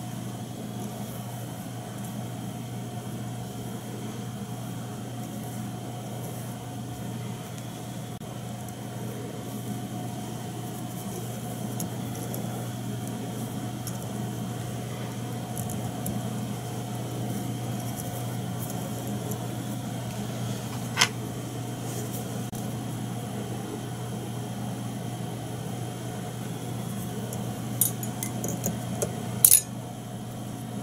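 Steady mechanical hum with a faint fixed whine, under the light clicks of fly-tying tools as a hackle feather is wound onto a streamer hook: one sharp click about two-thirds of the way through and a quick cluster of clicks near the end.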